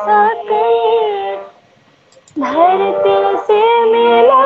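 A woman singing a slow solo vocal line in long held notes with small wavering ornaments. The phrase breaks off about a second and a half in, and she resumes after a brief pause. The voice sounds thin and narrow, as heard through a video call.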